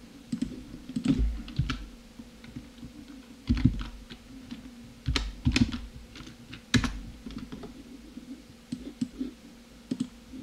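Irregular clicks and taps of a computer keyboard and mouse, some with a dull thud on the desk.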